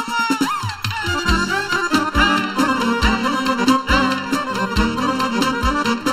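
Live Romanian folk party band playing an instrumental dance tune, a saxophone among the melody instruments, over a regular drum beat of roughly one thump a second.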